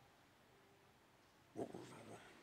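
Near silence: room tone through a pause in a man's speech, then about a second and a half in, a brief soft vocal sound from the same voice as he begins to speak again.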